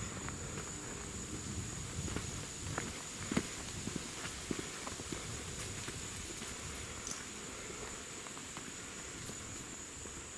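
Footsteps on dry leaf litter and twigs on a woodland floor, irregular steps with small snaps, thinning out after about halfway. A steady thin high-pitched tone runs underneath.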